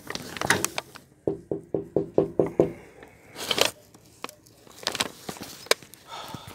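Rapid knocking, about eight short knocks in a second and a half, followed by a brief rushing noise and a few scattered clicks.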